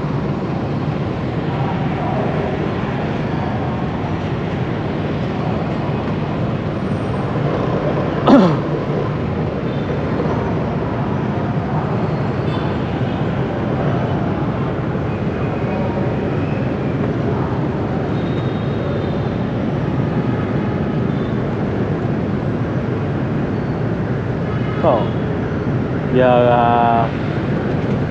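Dense city motorbike traffic at an intersection: many scooters idling and passing in a steady rumble. A single short, sharp sound with a quick sweep in pitch cuts through about eight seconds in.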